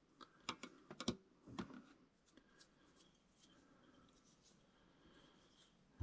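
Near silence, with a few faint clicks and ticks in the first two seconds from handling fly-tying tools at the vise, then only room tone.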